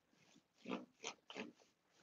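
Three short, faint breathy puffs from a person, like a stifled laugh or snorts through the nose, starting a little way in.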